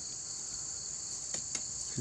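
Steady, high-pitched chorus of insects droning continuously.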